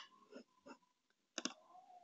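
Faint computer mouse clicks, with a sharper double click about one and a half seconds in.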